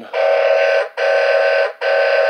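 Electronic horn sound from a 1995 Funrise toy semi truck's sound chip, played through its small speaker: three identical steady blasts of about three-quarters of a second each, sounding more like an emergency siren than a truck horn.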